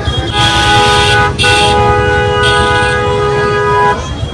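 Vehicle horn honking twice with two tones together: a blast of about a second, then a longer held blast of some two and a half seconds that cuts off abruptly near the end.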